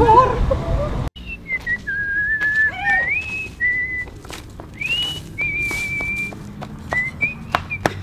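A man whistling a tune, starting about a second in: clear single notes, some held, some sliding up or down into the next. Light scrapes and clicks of a long-handled tool working the dirt ground come through under it.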